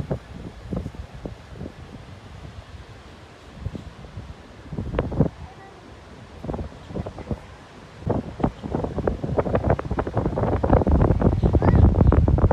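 Wind buffeting the microphone in uneven gusts, lighter in the middle and heaviest in the last few seconds.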